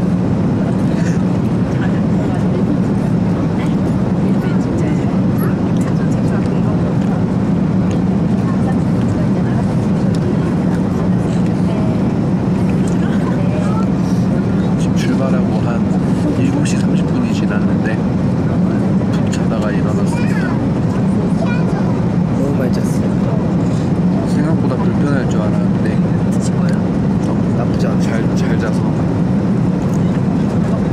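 Airliner cabin noise in flight: a loud, steady, unbroken low drone from the aircraft, with voices talking over it.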